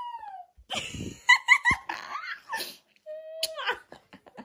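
Young children's high-pitched giggling and squealing: a falling squeal, a quick run of three giggles about a second and a half in, and a held squeal that drops in pitch near the end.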